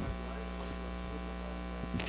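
Steady electrical mains hum, picked up through the microphone and sound system.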